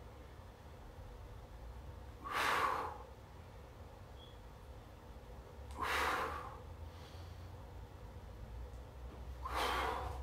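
A man's forceful exhalations during push-ups: three short, sharp breaths out, about three and a half seconds apart, one per repetition, over a faint low hum.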